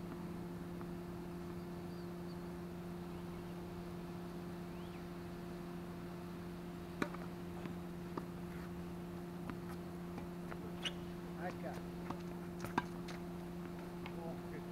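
Tennis balls struck by a racket and bouncing on a hard court: a scattered string of sharp pops in the second half, one near the end the loudest, over a steady low hum.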